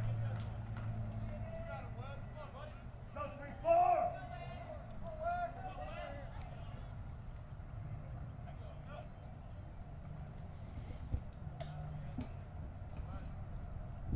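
Faint, distant voices talking under a steady low hum of room noise, with a single sharp click about eleven seconds in.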